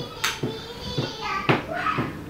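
Young people's voices chattering and laughing, not as clear words, with two sharp clinks of cutlery on plates, about a quarter second in and again about a second and a half in.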